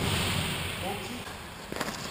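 Hockey skate blades scraping across rink ice close by, a hissing scrape that fades over the first second. A few sharp clicks follow near the end.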